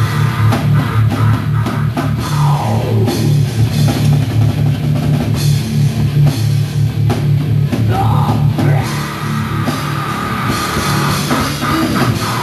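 Live heavy metal band playing loud: distorted electric guitars and bass grind out a low riff over a pounding drum kit with cymbal crashes.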